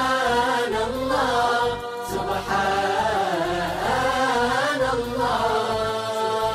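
Melodic vocal chanting as a background soundtrack: a single voice holding long, wavering notes with ornamented turns in pitch, in phrases of a second or two with brief breaths between.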